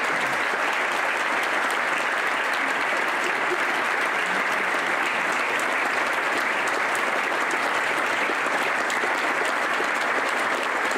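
Audience applauding steadily, a dense wash of many people clapping.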